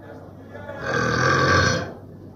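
A man's loud, low, drawn-out vocal sound, about a second long, starting a little before the middle.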